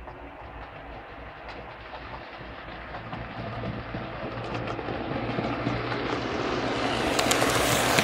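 OO gauge model train approaching on the near track: a steady motor hum with wheel clicks over the rail joints, growing steadily louder and most frequent as it passes close near the end.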